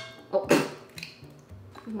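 A hen's egg broken open by hand over a glass mixing bowl, with one brief sound about half a second in as it opens and drops in. Background music plays underneath.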